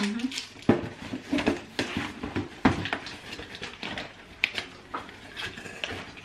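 A cardboard box and snack packets being handled and packed away: an irregular string of knocks, taps and crinkles, with a few sharper knocks along the way.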